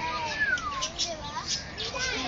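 Peacock calling: a high cry that falls in pitch, about half a second long, with people's voices around it.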